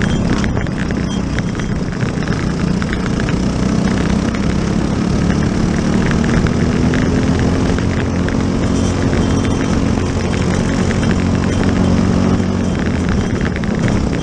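Briggs & Stratton LO206 four-stroke kart engine at racing speed, heard up close from on the kart. Its pitch climbs steadily as the kart accelerates out of a corner, holds along the straight, and drops near the end as it slows for the next corner.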